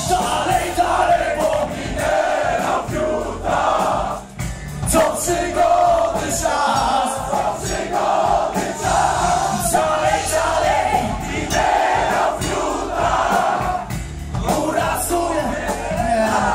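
Heavy metal band playing live in a club, with drums and singing, and the crowd shouting and singing along. The music drops briefly about four seconds in and again near the end.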